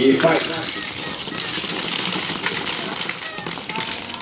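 Rapid clicking and rattling of plastic B-Daman marbles being fired and clattering across a hard plastic battle board, knocking small plastic targets about, with voices chattering behind.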